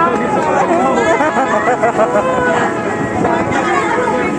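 Several people chattering at once in a passenger boat cabin, their voices overlapping, over a low steady engine hum.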